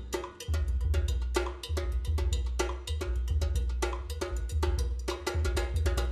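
Drum kit played in a fast, busy groove: rapid stick strikes on toms, cymbals and mounted percussion with a cowbell- or block-like click, over a sustained deep bass.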